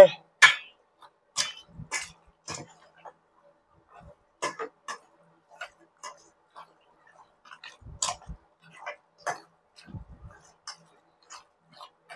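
Raw chicken pieces being tossed with marinade and minced aromatics in a stainless steel bowl, by hand and with a metal spoon. The sound is irregular short wet clicks and light clinks, about two a second.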